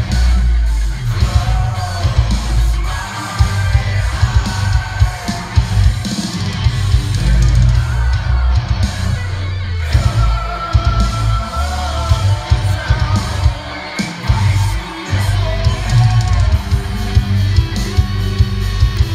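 A dense heavy rock mix playing back from a DAW session: drum kit, distorted guitars and bass under a sung vocal line.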